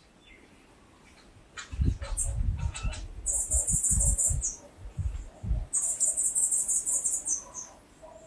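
A small bird's high, rapid trill, heard twice, each time for about a second and a half. Under it come irregular low rumbling bumps.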